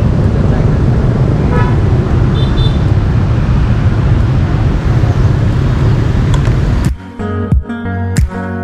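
Outdoor street ambience of traffic noise under a loud low rumble, with a short high horn toot about two and a half seconds in. Near the end it cuts to plucked guitar music.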